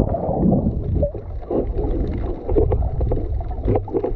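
Muffled underwater sound picked up by a camera submerged in the sea: a steady low rumble of moving water with short bubbling gurgles every half second or so.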